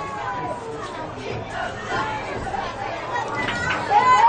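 Indistinct chatter and calls from the crowd and sidelines at a high school football game: many voices overlapping, getting louder just before the end as the play is run.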